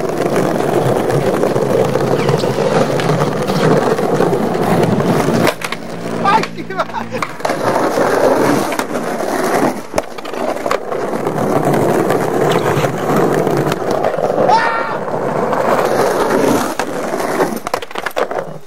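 Skateboard wheels rolling over brick pavers, a continuous gritty rumble. Sharp clacks of the board being popped and landed break into it. The rolling pauses briefly about six seconds in.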